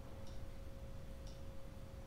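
Quiet room tone: a faint steady hum with a soft tick about once a second.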